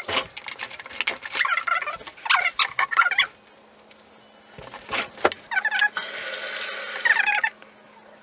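Several drawn-out, wavering animal cries in two spells, the second held for over a second, with sharp knocks of plastic bottles being set down and moved on a hard counter between them.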